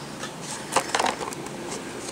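Plastic blister pack of a carded toy car crinkling and clicking as it is turned over in the hand: a string of light clicks and crackles, busiest around the middle.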